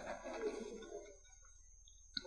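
Quiet room tone in a meeting chamber: a faint murmur in the first second, then near silence.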